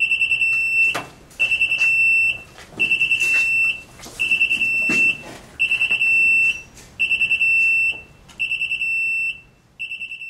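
Burglary alarm of a digital tire air machine's controller sounding, signalling a break-in in progress. It is a high electronic tone that repeats about every second and a half, about seven times. Each cycle is a quick stutter of beeps followed by a held note.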